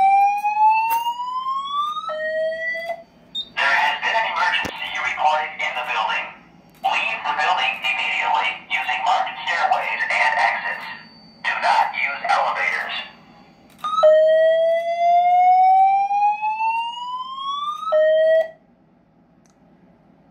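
Fire alarm voice evacuation system playing an EST-style message through speaker-strobes: a slow whoop tone sweeping up in pitch, a recorded voice announcement that is a little staticky, then a second whoop sweep. The sound cuts off a second or two before the end.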